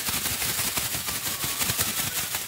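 Thin plastic bag crinkling in rapid, dense crackles as it is shaken to coat the feeder crickets inside with calcium powder.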